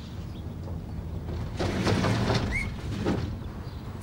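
Outdoor garden ambience: a low steady rumble with faint rustling, and a single short bird chirp about two and a half seconds in.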